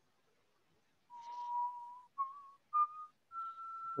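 A person whistling a short phrase of four notes, each higher than the last: one long note about a second in, then three short ones.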